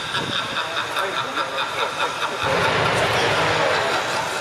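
Twin jet engines of a jet truck running, with a steady high whine; about halfway through a deeper, broader rush of noise sets in and the sound grows a little louder.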